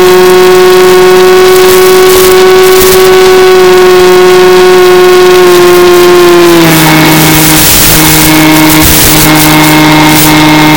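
Electric motor and propeller of a Mini Skywalker RC plane running at steady throttle, a sustained whine picked up on board over air rush. About two-thirds of the way through the pitch drops a step as the throttle is eased back, and the wind rush grows.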